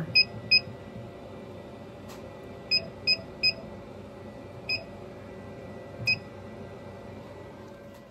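Laser cutter's control panel beeping on key presses while the head is jogged in small steps to line up a corner: seven short, high beeps, some in quick runs of two or three, over a steady machine hum.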